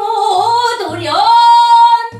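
A woman singing pansori solo, her voice bending through ornamented turns and then holding one long steady high note from a little past halfway.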